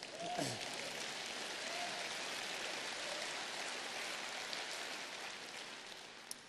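Audience applauding, starting just after the speaker's line ends, holding steady, then slowly dying away toward the end.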